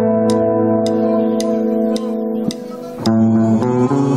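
Live band's electric guitars and bass guitar holding a sustained chord, with sharp ticks keeping time about twice a second. The chord breaks off about two and a half seconds in and a new chord starts about three seconds in: the band is opening the next song.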